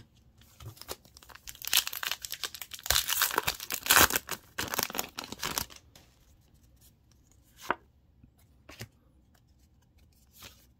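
A Pokémon TCG booster pack's foil wrapper being torn open and crinkled for a few seconds, then two short clicks near the end.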